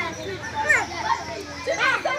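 A group of children chattering and calling out over one another, several voices at once, with a couple of louder rising calls.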